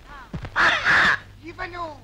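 A man's loud, harsh, strained voice shouting, in several rising-and-falling outbursts, the longest and loudest about half a second in.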